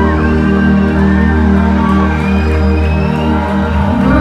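Live reggae band playing on stage, heard loud from the audience: steady bass with held keyboard chords and guitar.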